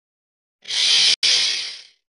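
A title-card sound effect: a loud burst of hissing noise a little over a second long, with a brief break in the middle, fading out at the end.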